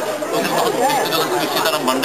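Speech only: people talking without a pause.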